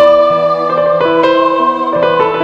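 Instrumental keyboard music: a melody moving over held chords, with the notes changing every few tenths of a second and a strong note struck right at the start.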